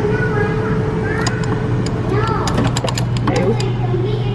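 Self-serve frozen yogurt machine humming steadily as it dispenses soft-serve into a paper cup, with a rapid run of sharp clicks for about a second in the second half, under chattering voices.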